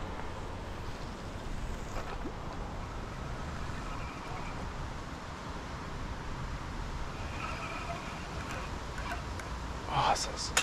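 Wind buffeting the camera microphone: a steady low rumble that holds throughout with no distinct events.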